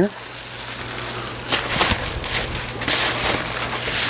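Sheets of gold reflective foil insulation crinkling in irregular bursts as they are unfolded and handled, over a steady low hum.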